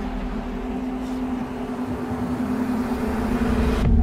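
Horror-trailer sound design: a steady low drone under a rushing swell of noise that builds in loudness and cuts off abruptly just before the end.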